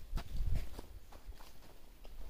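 Footsteps of people walking on a dirt forest trail strewn with leaves, an uneven crunch of steps about twice a second, with a louder low bump about half a second in.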